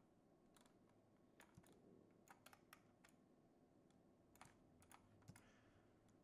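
Faint, scattered clicks of a computer keyboard and mouse, about a dozen, uneven, over near-silent room tone.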